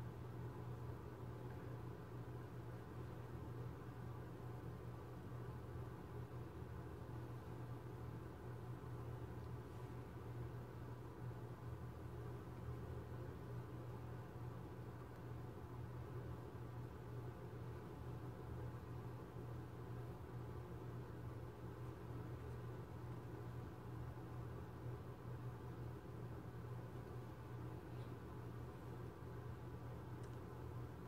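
Faint, steady low hum of room tone, even throughout, with no distinct handling sounds standing out.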